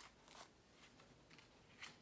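Near silence with a few faint rustles and light taps: a cutout bone shape being handled and pressed onto a cabinet door.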